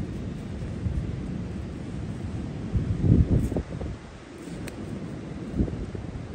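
Wind blowing on the microphone: a low, uneven noise that swells into a stronger gust about three seconds in.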